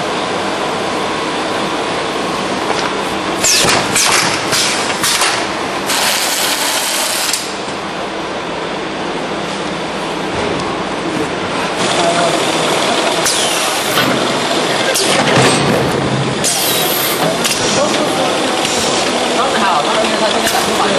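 A drop-style case-packing machine and its conveyors running with steady machine noise, with clattering about three to five seconds in and again later. Two hissing bursts, each about a second long, come near six and seventeen seconds.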